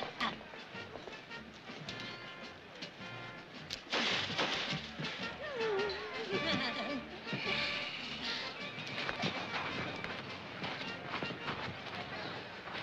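Background music with people's voices, but no clear words.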